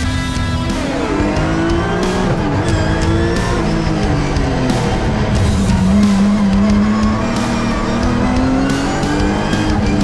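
BMW E46 M3's S54 straight-six engine under hard rally driving, its pitch climbing and falling several times as the car accelerates and slows, mixed with background music.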